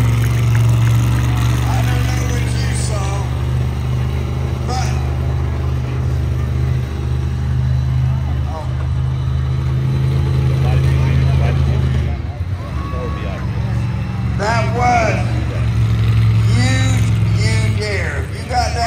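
Monster truck engine running hard and steady, dropping off about twelve seconds in and then picking up again. Voices shout from the crowd near the end.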